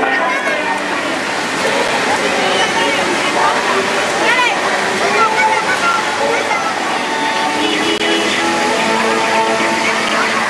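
Children shouting and squealing while playing in a pool, over a steady wash of splashing water, with music playing in the background.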